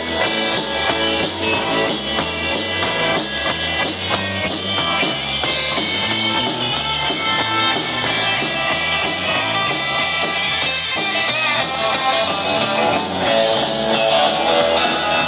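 Live rock band playing: a drum kit keeping a steady beat with cymbals, under electric bass and electric guitar.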